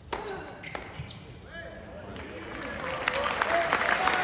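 Tennis ball struck by rackets during a rally in an indoor arena, with sharp hits in the first second. Crowd noise and voices swell steadily over the last two seconds to the loudest point, with scattered clapping.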